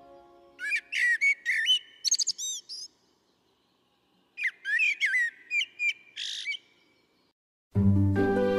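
A songbird singing two short phrases of quick, high chirps and whistles, a second or two apart.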